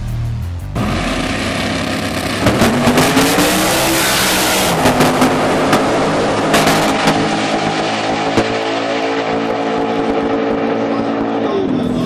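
Drag race cars launching and accelerating hard down the strip. The engine note climbs for a couple of seconds, then holds high and steady before dropping near the end. Electronic music plays underneath.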